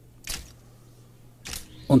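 Two short, sharp soundtrack effects about a second apart over a faint low hum, with narration starting at the very end.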